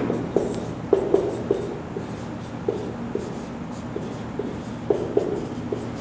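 Marker pen writing on a whiteboard: a run of short, uneven squeaky strokes as the letters are drawn, denser near the start and again toward the end.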